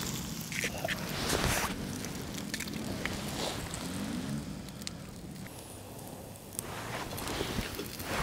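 Engines of off-road vehicles droning in the distance, rising and falling in pitch as they rev about midway. Under them, an egg frying in fat in a pan over a wood fire gives a faint sizzle, with a few sharp crackles from the fire.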